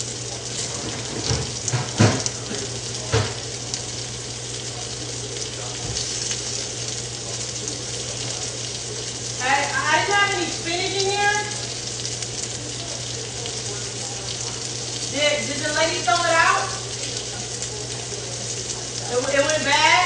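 Food sizzling steadily in a frying pan on the stove, with a few sharp knocks in the first few seconds and three short bursts of a person's voice later on.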